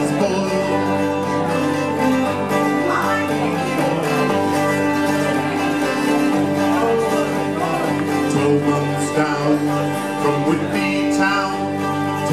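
Live acoustic folk trio playing an instrumental passage: picked archtop guitar and resonator guitar over long bowed cello notes.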